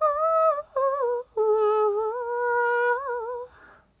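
A woman's wordless high-pitched singing, one voice humming a slow melody in three phrases: two short notes, then a long held note with slight wavering pitch, followed by a soft breath as it fades out.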